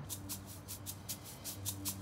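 Quiet background music: a fast, even ticking, about seven ticks a second, over steady held low notes.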